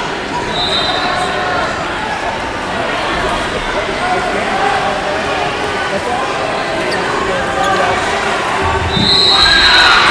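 Steady babble of many voices echoing in a large tournament hall, with a short referee's whistle blast about half a second in and a longer one near the end, and a low thump just before it.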